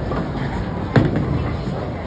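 Bowling alley noise: a bowling ball lands with a sharp thud on the wooden lane about a second in, over background clatter and voices.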